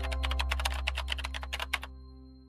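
Keyboard-typing sound effect: a rapid run of key clicks, about eight a second, stopping shortly before the end. It plays over a sustained low synth drone that slowly fades.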